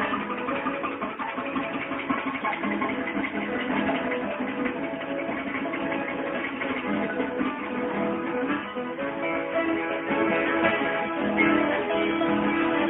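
Viola caipira, the Brazilian ten-string guitar, played solo: a steady stream of plucked notes and strummed chords, a little louder near the end.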